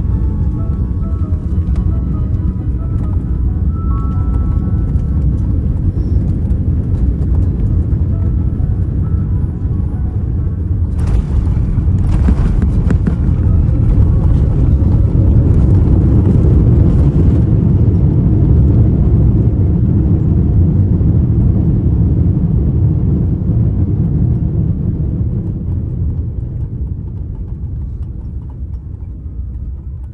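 Cabin rumble of a Boeing 787-10 landing, heard from inside the cabin: steady engine and airflow noise on the final approach. A sudden jump in noise comes about eleven seconds in as the wheels touch down, it is loudest during the runway rollout, and it eases off near the end as the jet slows. Quiet background music runs underneath.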